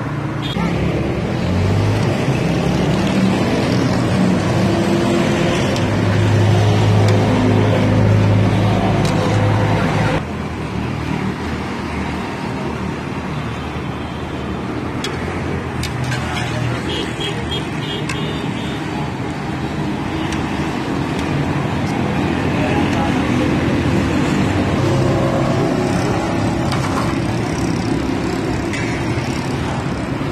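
Samosas sizzling as they deep-fry in a karahi of hot oil, with street traffic and vehicle engines running close by and voices in the background. A low engine hum is strongest just before the sound changes abruptly about ten seconds in.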